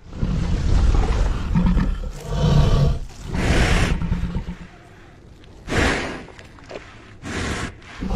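Film sound effects of a giant crocodile: a low growling rumble, then several loud breathy bursts a second or two apart.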